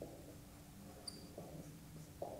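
Faint squeak and rub of a marker pen writing figures on a whiteboard, with one short high squeak about a second in, over a faint steady low hum.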